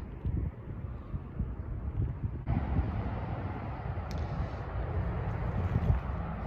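Wind buffeting the phone's microphone, mixed with the steady noise of highway traffic below. The noise swells about two and a half seconds in.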